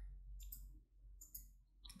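Near silence with a few faint, scattered clicks from hands working a crochet hook through yarn.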